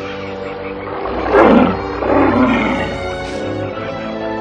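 A cartoon creature's roar, twice, about one and two seconds in, over background music.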